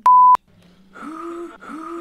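A loud, steady electronic censor beep lasting about a third of a second, with a click at each end, bleeping out a word. Then, from about a second in, a woman's voice makes long, even-pitched cries, three in a row.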